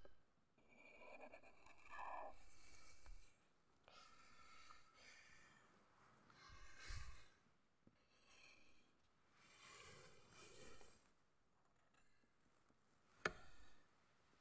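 Faint scratching of a black alcohol-based art marker drawing on paper, in several separate strokes of a second or so each. A single sharp click comes near the end.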